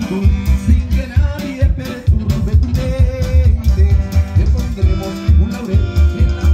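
A live band's music played loud over a PA system: a steady deep bass-and-drum beat under keyboard melody, with singing.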